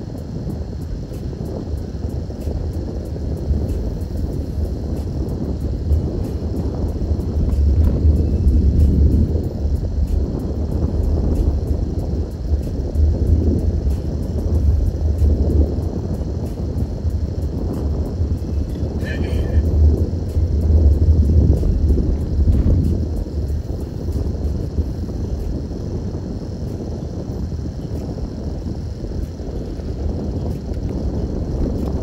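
Car cabin noise while driving: a steady low rumble from the engine and tyres that swells and eases with speed, with a short high beep a little past the middle.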